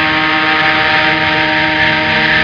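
Sludge/doom metal: a heavily distorted electric guitar chord held and left ringing with feedback, a loud, steady drone with no beat, as the closing sound of the opening song.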